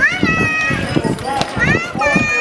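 Shod hooves of a draft horse walking on asphalt, a steady series of low knocks. Over them, a high-pitched voice rises and holds twice.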